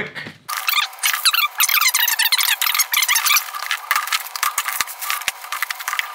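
A cardboard shipping box being cut open and unpacked, with a fast, thin, high-pitched jumble of rustling and many quick clicks and rattles starting about half a second in.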